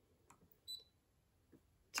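Near silence broken by a short, faint high beep about two-thirds of a second in, from a Brother ScanNCut cutting machine's touchscreen being tapped with a stylus. There are a few faint ticks around it.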